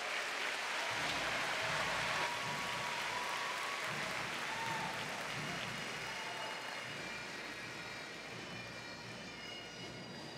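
Large arena crowd applauding. The applause fades gradually over the last few seconds.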